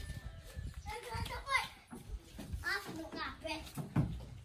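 Several children's voices calling out and chattering at play, in short high calls scattered through the few seconds.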